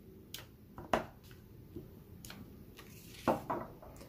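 A few light clicks and knocks of a clear acrylic stamp block set down and pressed onto cardstock on a craft mat, the sharpest about a second in, then a brief scuff of paper near the end as the stamped card panel is lifted.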